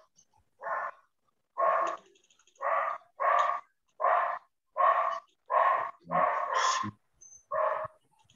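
A dog barking over and over, about ten sharp barks roughly one every three-quarters of a second, excited. It is heard through a participant's microphone on a video call.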